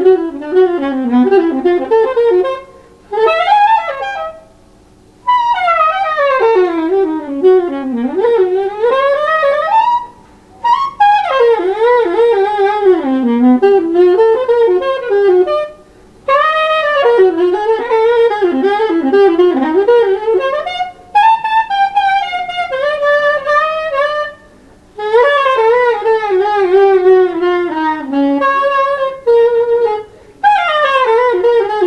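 Solo saxophone in the soprano range, freely improvised: fast, twisting runs of notes in phrases broken by short pauses, with one long falling line near the end.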